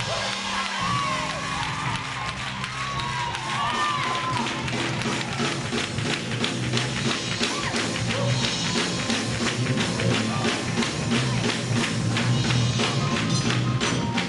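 Live gospel band playing a fast, upbeat groove on drum kit and electric bass guitar. The drumming grows busier about halfway through.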